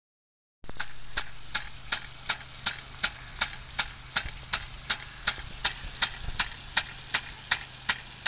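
Impact-driven rain gun irrigation sprinkler running: its swing arm clacks against the water jet in a steady rhythm of about three strikes a second, over the steady hiss of the spray. It starts about half a second in.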